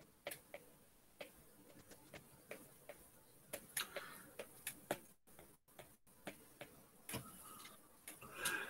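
Faint, irregular light clicks of a stylus tip tapping and stroking on an iPad's glass screen while sketching, about one or two a second, with a small cluster in the middle.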